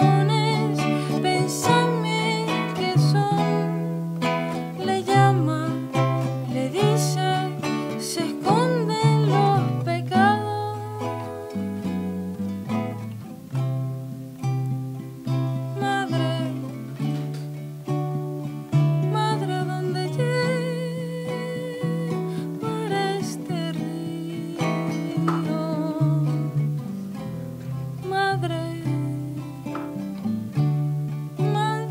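Live acoustic music: an acoustic guitar picking melodic lines over held low notes that change every second or so, with a second small plucked string instrument and a singing voice that wavers in pitch in places.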